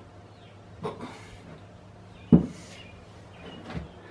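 A few metallic clunks from a tool on a seized Ford flathead V8 as it is forced to turn over, with brief rustling between them. The loudest knock comes a little past the middle. The engine stays locked and does not spin.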